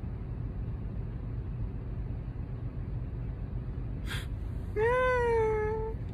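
Steady low hum inside a car. Near the end comes a single drawn-out, high-pitched call about a second long, rising at first and then held, preceded by a brief breathy rustle.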